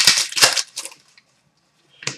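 Trading cards sliding and swishing against each other as they are handled, a few quick dry swishes in the first second.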